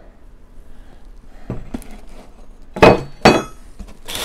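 New steel bush hog blades clanking twice, about half a second apart, with a brief metallic ring after each knock; a few lighter clicks come first.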